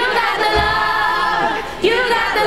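A cappella group of mixed voices singing together without instruments, holding long notes in harmony. The sound drops briefly just before the end, then the voices come back in on a new phrase.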